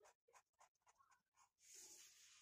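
Faint pencil scratching on graph paper: a run of quick, short hatching strokes drawn along a ruler, then a longer scratch near the end.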